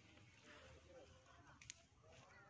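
Near silence: faint distant voices, with one brief faint click near the end.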